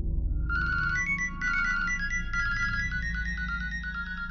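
A phone ringtone: a bright electronic melody of quick stepped notes starts about half a second in, over a low steady background music bed.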